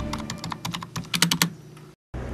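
Typing on a computer keyboard: a quick, irregular run of keystroke clicks, fastest about a second in, stopping about a second and a half in.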